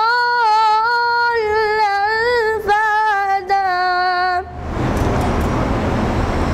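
A boy singing soz unaccompanied, drawing out long sustained notes with a wavering, ornamented pitch. About four and a half seconds in the voice stops and a loud rushing noise follows.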